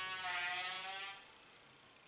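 A woman's voice holding a drawn-out hum for about a second, then near silence: room tone.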